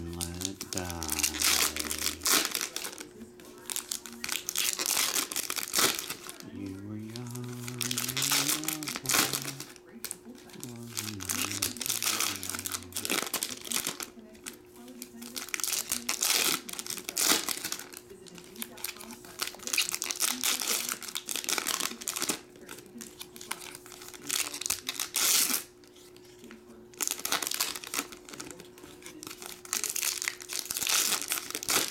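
Foil wrappers of trading-card packs crinkling and tearing as packs are ripped open by hand, in repeated bursts.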